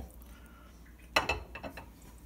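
Kitchen utensils knocking against a stainless steel cooking pot: one sharp knock about a second in, then a few lighter clinks.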